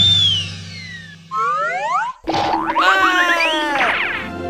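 Cartoon sound effects: a long falling whistle, then a few rising whistle glides, a sharp hit about two seconds in, and a cluster of rising springy boing-like glides. Soft background music sits under them.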